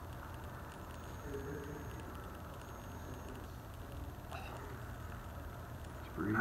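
Quiet room tone with a low steady hum. A faint voice murmurs briefly twice, and there is a single soft click about four seconds in.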